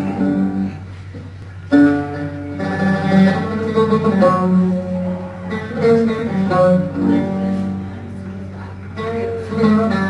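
Solo oud played with a pick, a slow melody of single plucked notes; after a quiet first second the line resumes with a strong pluck and runs on note by note.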